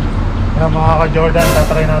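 Street traffic with a steady low engine drone, and indistinct voices from about half a second in.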